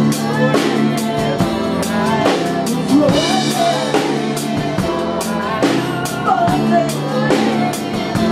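A rock band playing live, with a drum kit keeping a steady beat under guitars and other sustained instruments.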